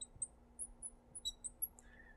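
Marker squeaking in short, high-pitched strokes on a glass lightboard while writing an inequality, about a dozen quick squeaks.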